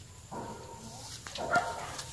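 A short, faint animal call about one and a half seconds in.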